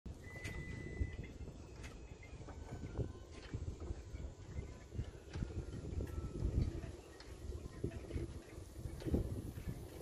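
Outdoor ambience with wind rumbling on the microphone and scattered small clicks and taps, plus a short, steady high beep near the start.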